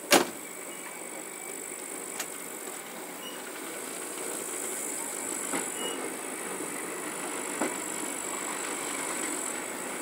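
Passenger train rolling slowly, heard from a carriage window: a steady rumble that grows a little louder, with a loud clank right at the start and a few lighter knocks from the running gear after it.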